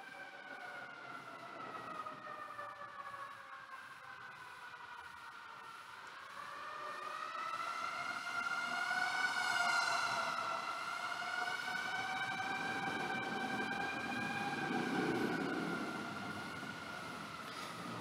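A siren wailing, its pitch slowly rising and falling, growing louder from about halfway through and then holding steady.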